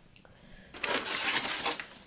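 Handling noise: a hard plastic RC car body rattling and rustling as it is picked up and moved close to the microphone, for about a second starting near the middle.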